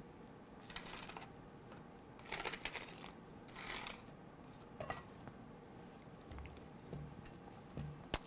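A few faint, short scrapes of a flat scraper card sweeping leftover cinnamon powder across the plastic body plate of a manual capsule filling machine.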